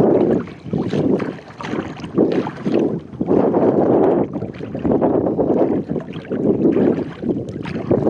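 Wind buffeting the microphone in uneven gusts, with sea water lapping against the hull of a sea kayak.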